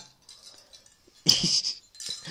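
A short, breathy, hiss-like vocal sound from a young man, coming about a second and a quarter in and lasting about half a second.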